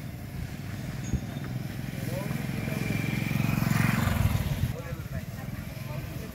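A motorbike engine running close by: its low hum grows louder to a peak about four seconds in, then fades, as if the bike passes. Faint voices are heard over it.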